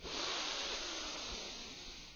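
A long, breathy exhale from a person: a steady hiss that starts suddenly and fades away over about two seconds.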